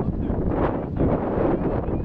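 Wind rushing across the microphone, a dense low noise that rises and falls in gusts.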